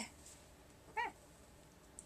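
A cat's single brief, high-pitched mew about a second in, in an otherwise quiet room.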